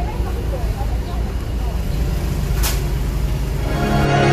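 Steady low rumble inside a car's cabin, with faint voices in the first second and a single brief hiss a little past halfway.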